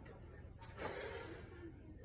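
A man breathing hard as he catches his breath after a set of switch lunges, with one louder breath about a second in.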